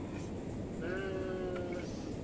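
A single bleat from a goat or sheep, one steady call lasting about a second, heard over a low steady background noise.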